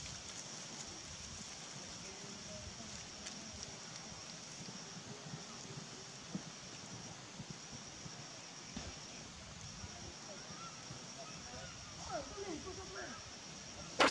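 Outdoor ambience dominated by a steady, high-pitched insect drone that breaks off briefly a few times, with faint short squeaks near the end.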